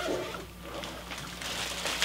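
A mesh bag and the plastic-wrapped supplies inside it rustling and crinkling as they are handled, louder in the second half.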